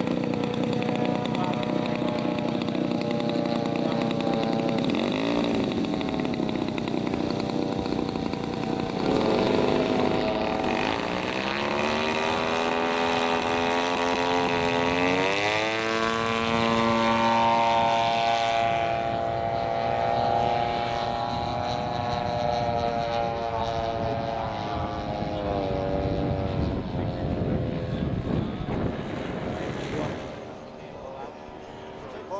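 Engine and propeller of a large radio-controlled scale Cessna 152 model airplane. It runs steadily at first, then its pitch rises smoothly as it throttles up for the takeoff run, holds high, eases down somewhat and stays steady as the plane climbs away, fading near the end.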